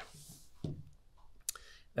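A pause between sentences of a man speaking: a soft breath at the start and a single short mouth click about a second and a half in, just before he speaks again.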